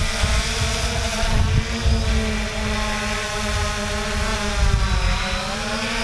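3DR Solo quadcopter's motors and propellers buzzing steadily as it flies back toward the operator, the pitch wavering slightly as it moves. Wind rumbles on the microphone underneath.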